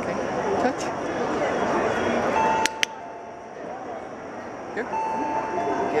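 Pebble Smart Doggie Doorbell chiming twice over crowd chatter, each time a higher note stepping down to a lower one. Two sharp clicks come during the first chime. The chime marks the dog's correct touch and works like a training clicker, signalling that a treat follows.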